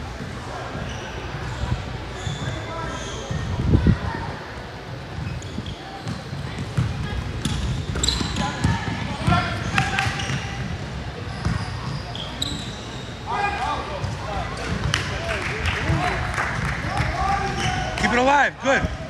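Basketball bouncing on an indoor court and players running during a game, with voices in the background; one loud thump about four seconds in.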